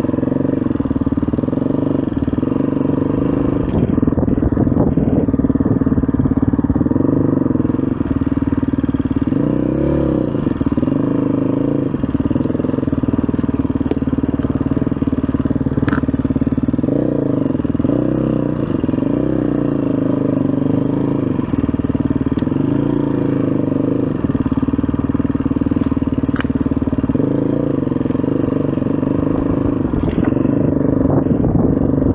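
SWM RS500R enduro motorcycle's single-cylinder four-stroke engine running under way, its pitch rising and falling again and again as the throttle is opened and eased off. Two sharp clicks stand out, about halfway and near the end.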